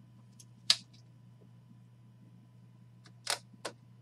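Rigid plastic trading-card holders clicking as they are handled and set down on a stack of cards: a few short sharp taps, the loudest about three-quarters of a second in, then three more near the end.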